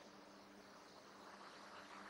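Near silence: room tone with a faint steady hiss and a low hum.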